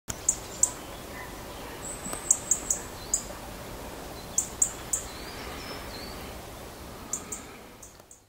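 Small birds chirping: short, high chirps in quick runs every second or two, with a few thin whistles, over a steady background hiss.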